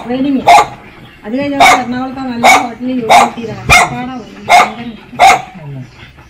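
A dog barking repeatedly, about seven sharp barks at roughly one a second, over a woman talking.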